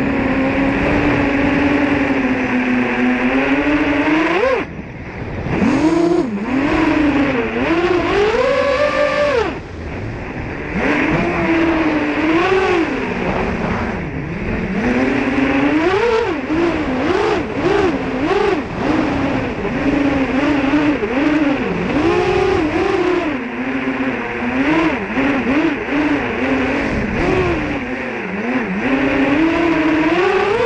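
Onboard sound of a 7-inch FPV racing quadcopter, its four 2507 1500KV brushless motors and propellers on a 6S battery buzzing as heard by the GoPro mounted on the frame. The pitch swoops up and down constantly with the throttle, and it drops briefly about five seconds in and again about ten seconds in as the throttle is chopped.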